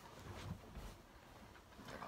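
Faint rustling and shuffling of bedding and clothes as a person shifts his weight on a bed, with a few soft bumps, in an otherwise quiet room.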